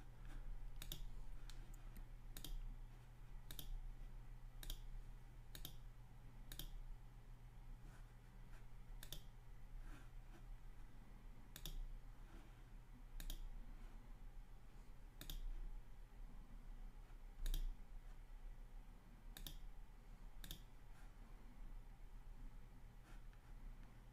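Faint computer mouse clicks, single sharp clicks at irregular intervals every second or two, over a faint steady low hum.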